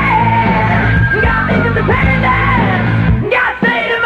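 Hard rock band demo recording: a male lead vocal belting the melody over electric guitar, bass and drums.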